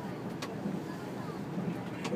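Running noise of an Odakyu RSE 20000 series Romancecar electric train heard from inside the car: a steady low rumble of wheels on rail, with a sharp click about half a second in.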